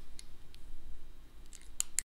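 A few short, sharp clicks, irregularly spaced and bunched near the end, over a low steady hum.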